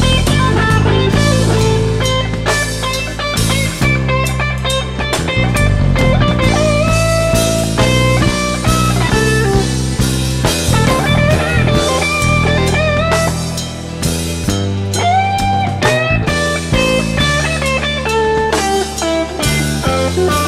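Blues band playing an instrumental passage: a lead guitar line whose notes bend up and down, over bass and a drum kit.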